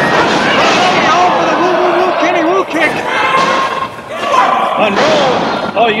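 Slams and thuds of wrestlers' bodies hitting the ring, under men's voices talking.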